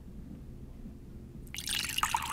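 Water poured from two plastic cups at once into cups of clay and sand, splashing and trickling onto the soil. The pouring starts suddenly about one and a half seconds in.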